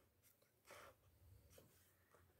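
Faint scratching of a ballpoint pen on paper: one short stroke about two-thirds of a second in, then a couple of tiny ticks.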